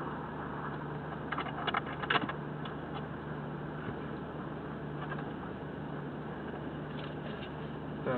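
Car engine idling steadily, heard from inside the cabin as a constant low hum, with a few light clicks about one and a half to two seconds in.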